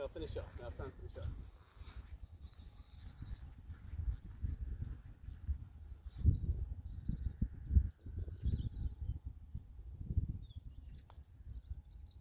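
Wind buffeting the microphone in irregular low gusts, strongest around the middle, with a few faint bird chirps about halfway through.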